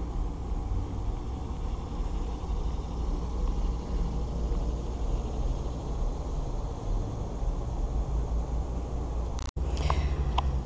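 Steady low outdoor rumble with no clear events in it, broken by a split-second dropout near the end.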